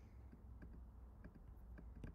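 Faint, irregular clicking of a computer keyboard and mouse, a few clicks a second, over a low steady hum.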